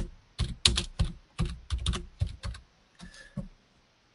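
Typing on a computer keyboard: a quick run of about a dozen keystrokes, ending a few seconds in.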